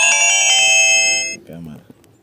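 Mobile phone message alert: a chime of several ringing notes that stack up and hold, then cut off about one and a half seconds in, announcing an incoming money-transfer message.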